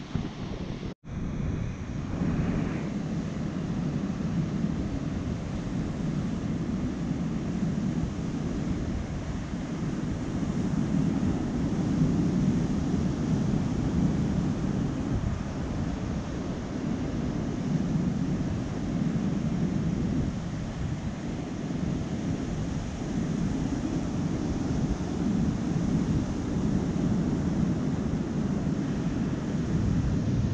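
Surf breaking and washing over a rocky, sandy shore, with wind buffeting the microphone. The noise swells and eases as the waves come in, broken by a momentary dropout about a second in.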